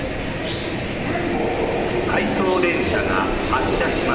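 Tobu 70000 series electric train pulling out of an underground-style station platform, a steady rumble of wheels and running gear that echoes under the station roof. Voices join in about halfway through.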